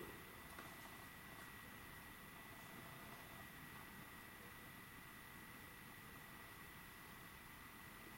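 Near silence: faint room tone with a low hiss and a thin, steady high-pitched whine.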